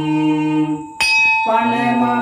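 A voice chanting devotional verses in long held notes. It breaks off just before a bell is struck about a second in, and the bell rings on under the chant as it resumes on a lower note.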